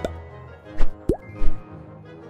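Background music with cartoon-style pop sound effects over it: a short rising pop at the start and a louder quick upward bloop about a second in, between two short hits.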